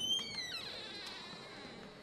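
A high-pitched electronic tone: several pitches glide together for about half a second, then one steady high tone holds and slowly fades.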